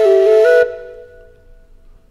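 Flute music: a held note over a steady second tone steps up, then the phrase stops about half a second in and its ringing fades away, leaving a pause.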